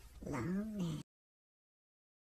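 A person's voice making a drawn-out, meow-like call that rises and falls in pitch, cut off suddenly about a second in.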